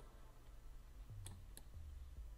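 Two quiet computer mouse clicks about a third of a second apart, a little past the middle, over a faint low hum.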